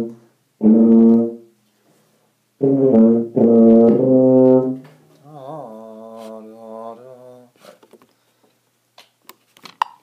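Tuba playing four loud held notes: two short ones, then two longer ones about 3 to 4.5 s in. After them comes a quieter, wavering held pitch. Near the end a metronome starts clicking twice a second, at 120 beats per minute.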